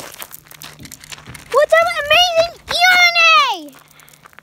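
A plastic spork dragged on a string over rough pavement, scraping and crackling for about a second and a half, followed by a very high-pitched voice speaking two short phrases.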